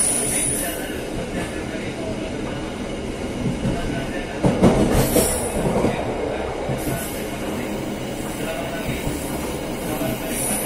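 Passenger train running on rails, heard from its rear carriage: a steady rolling rumble, with a burst of wheel clatter and knocks about halfway through as the wheels cross a set of points.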